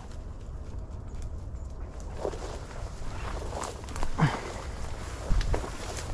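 Footsteps and brush swishing and crackling against clothing as a person walks through dense, thorny brush, over a steady low rumble of wind on the microphone. A brief sound falling sharply in pitch comes about four seconds in.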